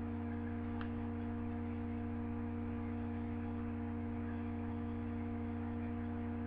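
A steady electrical hum made of several fixed tones, unchanging throughout, with one faint click about a second in.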